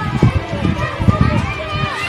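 Faint background voices with irregular low thumps and rumble during a pause in a man's speech at a microphone.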